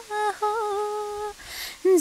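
A young woman singing a Nepali song solo without accompaniment, holding one long note, then drawing a quick breath about a second and a half in before starting the next phrase.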